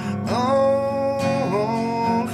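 A man singing a long held note to his own acoustic guitar accompaniment, sliding down to a new note about a second and a half in.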